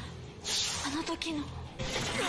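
Quiet dialogue from a TV episode's soundtrack, with a breathy hiss starting about half a second in and lasting over a second.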